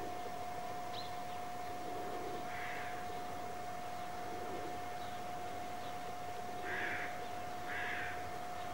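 Three short, harsh bird calls, one about three seconds in and two near the end, over a steady hiss and a constant high-pitched hum.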